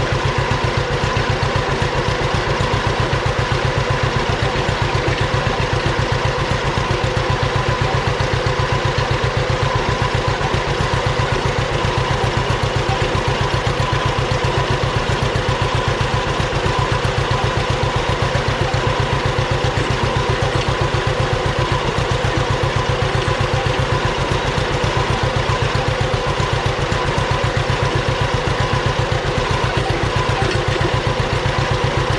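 John Deere B tractor's two-cylinder engine running steadily under load as it pulls a cultivator down a row, a fast even beat of firing pulses with no change in speed.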